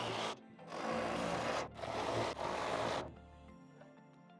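Cordless drill driving bolts through the console's aluminium angle bracket into the deck, in three short bursts that stop about three seconds in.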